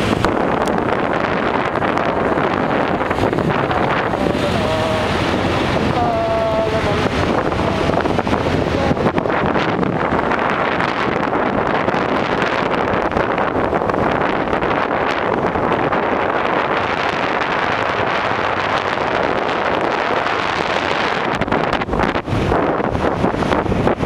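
Steady, loud wind noise buffeting the microphone of a camera carried on a moving motorcycle, covering the engine and road noise underneath. A short pitched sound cuts through about six seconds in.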